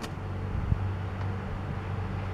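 A motor running with a steady low hum, and a single short knock just under a second in.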